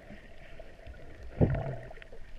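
Muffled underwater ambience heard through a submerged camera, with faint scattered clicks. About one and a half seconds in comes a single low thump of moving water followed by a brief low rumble.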